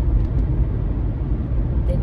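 Steady low rumble of a moving car, heard from inside the cabin: road and engine noise while driving.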